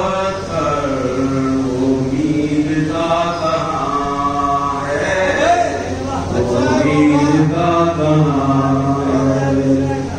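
A man's voice chanting in long, drawn-out melodic phrases, holding each note, with short breaks between phrases.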